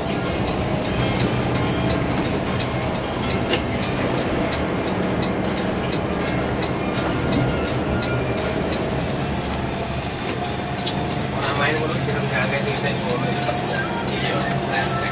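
Cabin sound of a moving Mercedes-Benz 1626 coach: a steady diesel engine drone with road and tyre noise. A voice is briefly heard near the end.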